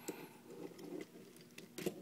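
Faint clicks and light handling noise of a plastic transforming action figure's parts being moved and popped on their pegs, with a couple of small clicks near the middle and just before the end.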